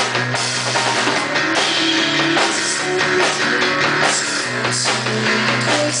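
A live indie shoegaze rock band playing: electric guitar, electric bass and drum kit, loud and continuous, with sustained low bass notes under the guitars and drums.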